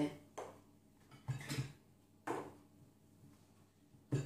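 Three short knocks and clinks, about a second apart, as small bowls and containers are handled and set down on a table; the middle one has a duller thud.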